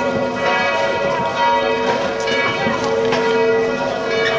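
Church bells pealing, with many overlapping strikes whose tones keep ringing on.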